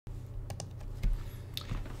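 A few short, faint clicks, the loudest about a second in, over a low steady hum.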